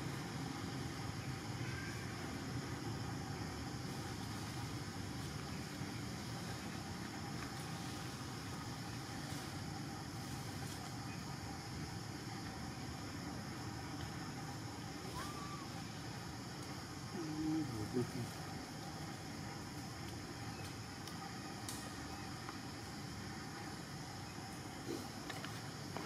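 Steady outdoor background noise: a low rumble with faint, constant high-pitched hums. A brief, louder sound comes about two-thirds of the way through.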